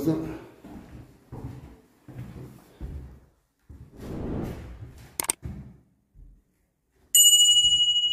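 A bell 'ding' sound effect from a subscribe-button animation: one sudden clear chime about seven seconds in that rings on and slowly fades. Before it there are only quiet scattered knocks and rustles.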